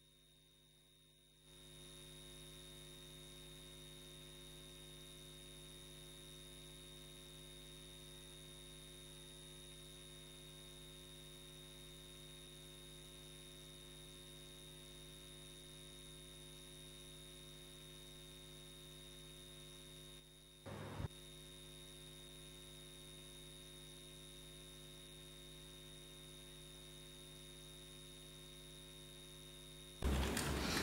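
Faint, steady electrical mains hum on the audio line, coming in about a second and a half in, with one brief crackle about two-thirds of the way through.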